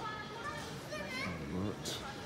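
Indistinct voices of people talking, including a child's high voice, with a short hiss near the end.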